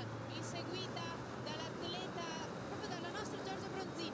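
Faint outdoor road-race ambience: a steady low background rumble with a hum, and scattered faint high-pitched calls throughout.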